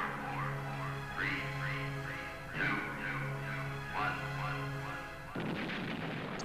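Intro jingle music: electronic tones sweeping in repeated arcs over a steady, pulsing bass note, with a sudden burst of noise about five seconds in.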